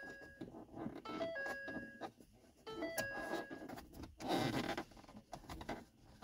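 Ford F-150 dashboard warning chime, sounding three times about a second and a half apart as the key is turned on, each a few short stepped tones followed by a held tone. A brief noise follows about four seconds in.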